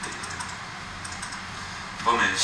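Typing on a laptop keyboard: scattered light key clicks at an uneven pace.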